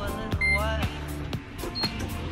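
Background music with singing. Under it, a short electronic beep about half a second in, from the lift's key-card reader as a card is held to it, and a briefer, higher beep near the end.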